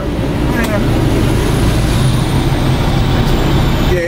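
Heavy diesel semi-trucks running at idle and creeping along, a steady low rumble heard from inside a truck cab, as a tractor-trailer pulls slowly past close alongside.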